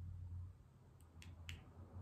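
Near silence: faint room tone with a low hum, and three short, faint clicks about a quarter-second apart in the second half.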